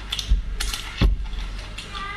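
Several sharp lip-smacking clicks from the mouth, with two dull thumps, about a third of a second in and about a second in.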